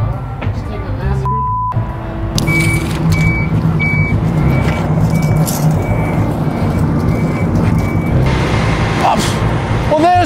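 Construction-site machinery: an engine running low and steady, with a high beeping alarm, typical of a reversing vehicle, repeating about every two-thirds of a second for several seconds from about two and a half seconds in. A brief single tone sounds about a second in.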